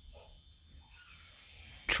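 A dog whimpering faintly in the background, with a couple of short soft sounds.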